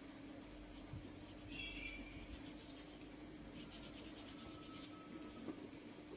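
Faint scratching of colouring on paper: a short scrape, then a quick run of light strokes in the middle.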